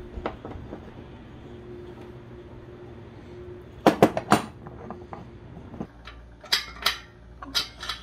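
Sharp clacks and clinks of hard plastic and metal objects being handled and knocked together. There are three loud clacks about four seconds in and a few more clinks near the end.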